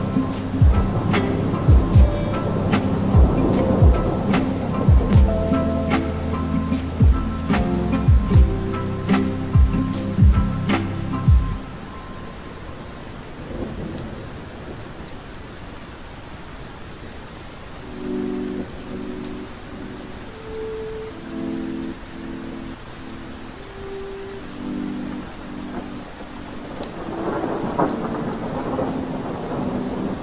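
Lo-fi hip hop beat layered over steady rain. The drums and sustained chords drop out about eleven seconds in, leaving the rain with a few sparse chords, and the beat comes back near the end.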